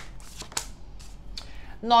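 A tarot deck being shuffled between the hands: a run of light, crisp card flicks that thin out after about a second.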